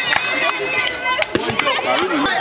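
A handball slapping into players' hands and on the concrete court several times, in sharp claps, over players' voices calling out.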